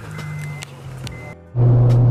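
Honda Integra four-cylinder engine droning steadily, heard inside the cabin; after a cut about one and a half seconds in it is louder and steady at highway cruise.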